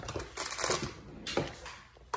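Handling noises: a quick cluster of clicks and rustles about half a second in, then a single sharp knock a little after the middle, as small objects are picked up and the phone is moved about.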